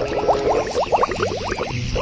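Cartoon-style bubbling water sound effect: a rapid string of short rising bloops, about eight a second, that pauses briefly near the end.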